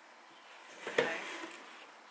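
A cardboard presentation box set down into a cardboard shipping carton, with one light knock about halfway through over faint handling noise.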